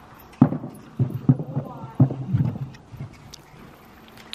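A horse's hooves striking a low wooden bridge obstacle in an indoor arena: about four loud thumps in the first two and a half seconds as the horse steps across, then lighter footfalls.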